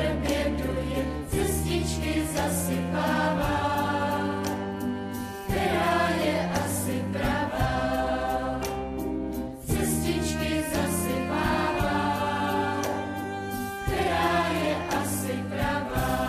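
A children's choir singing a song over instrumental accompaniment, with held bass notes beneath the melody.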